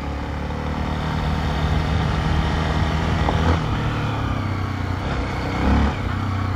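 Honda XRE trail motorcycle's single-cylinder engine running as it climbs a gravel track, under a steady rush of wind and tyre noise. The engine note drops about halfway through.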